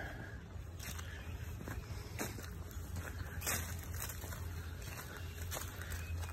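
Footsteps on a lawn covered with dry fallen leaves, several soft crunching steps about a second apart, over a low steady rumble.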